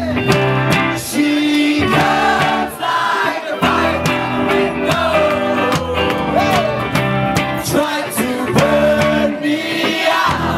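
Live rock music: a band with electric guitars playing under a singer.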